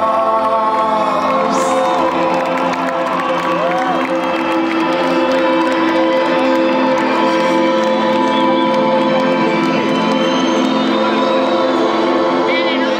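Live rock band holding sustained chords through the PA, with the crowd cheering and whooping over the music.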